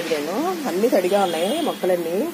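A woman talking in Telugu, with a faint hiss of liquid being poured from a plastic jug onto potted plants.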